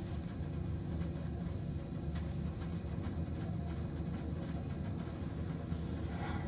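Steady rumble of a cable-car gondola running into its station, heard from inside the cabin.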